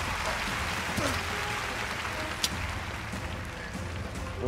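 Studio audience applauding and cheering over a low, steady music drone, with a single sharp click about two and a half seconds in.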